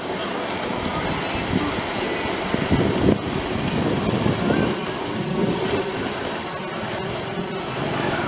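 Steady wind rushing over the microphone, with road noise from a slowly moving Hyundai i20, heard from inside the car.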